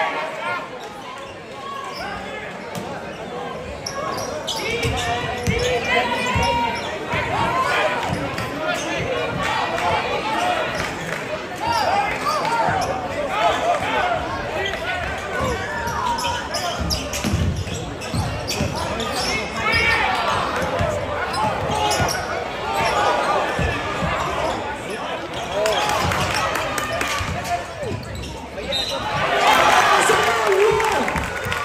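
Basketball game in a gymnasium: a basketball bouncing on the hardwood court, with repeated short thuds, under the talk of spectators and players.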